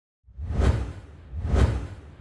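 Two whoosh sound effects about a second apart, each with a deep bass rumble under a rushing hiss, forming a logo intro sting. The second fades away near the end.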